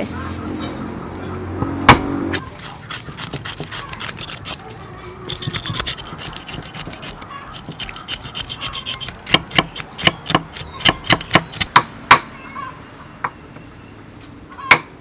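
Kitchen knife scraping the scales off a fresh fish on a wooden chopping board: quick, rasping strokes, with one sharp knock about two seconds in and a run of sharper separate strokes, about three a second, in the second half.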